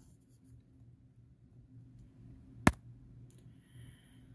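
Faint room tone with one sharp click about two-thirds of the way through: the hard plastic base of an animated novelty figure knocking on the tabletop as it is turned by hand.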